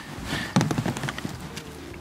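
Light clicks and knocks of two-inch PVC pipe and an elbow fitting being handled and fitted together, in a quick cluster about half a second to a second in.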